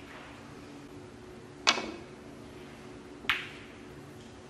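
Snooker shot: a sharp click as the cue strikes the cue ball about a second and a half in, then a second, quieter click about a second and a half later as the balls collide, over a quiet arena hum.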